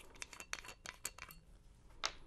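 Faint light clicks and taps of a glass bourbon bottle being opened and handled, with a sharper click at the very end.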